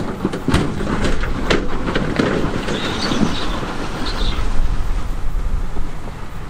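Komatsu D58E crawler bulldozer pushing a pile of broken rock: its diesel engine working under load, its steel tracks clanking, and rocks knocking and grinding ahead of the blade. Many sharp knocks come in the first two seconds, and a high squeal is heard about three seconds in and again around four.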